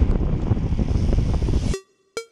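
Wind buffeting the microphone of a camera on a moving road bike, a loud rough rumble with irregular knocks, which cuts off suddenly near the end.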